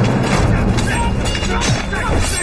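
A hand-to-hand fight soundtrack: men shouting and grunting amid a rapid string of hits and thuds, over loud action music.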